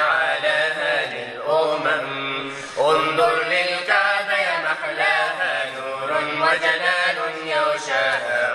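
A man singing an Arabic nasheed in long, wavering melismatic lines.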